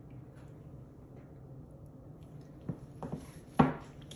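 A 12x12 stretched canvas set down flat on a table: a couple of light taps, then one sharp knock near the end.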